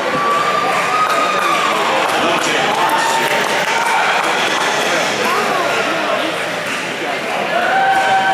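Banquet audience applauding, with crowd voices mixed in.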